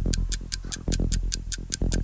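Quiz countdown-clock sound effect: fast, even ticking over a low steady hum, marking the time running out on a 30-second round of questions.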